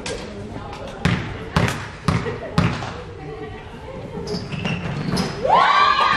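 A basketball dribbled four times on a hardwood gym floor, the bounces about half a second apart, as a player's routine at the free-throw line. Near the end a long shout rises in pitch and holds.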